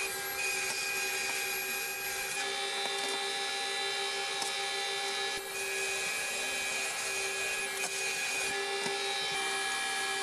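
Thickness planer and its dust collection running with no board in the cut: a steady, even hum with a high whine.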